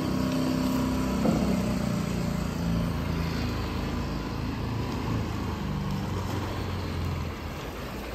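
Small outboard motor on a fishing boat running steadily as the boat passes, fading near the end.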